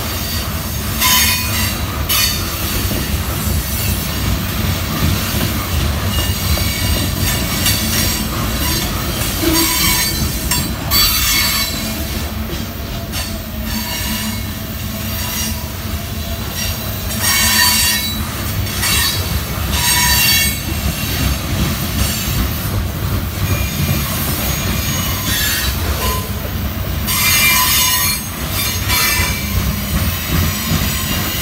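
Freight train cars rolling past close by, a steady low rumble of wheels on rail. High-pitched wheel squeal rises and fades several times.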